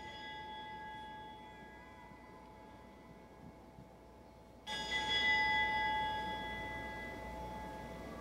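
An altar bell rung at the elevation of the chalice during the consecration. The ringing of a stroke made just before fades slowly, then the bell is struck again, louder, about five seconds in, and its clear tones ring on.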